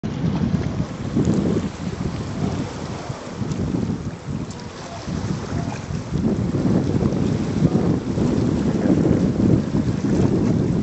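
Wind buffeting the microphone in gusts, a low rumble that eases in the middle and grows stronger in the second half, over water moving around rocks.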